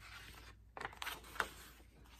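The page of a large picture book being turned: a paper rustle, with a few short crinkles and scrapes about a second in.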